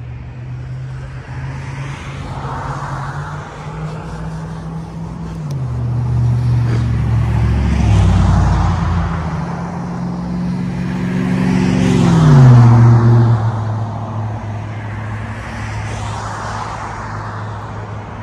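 Road traffic going by: several vehicles pass one after another, their tyre noise swelling and fading. An engine hum drops in pitch as each passes, and the loudest pass comes about twelve seconds in.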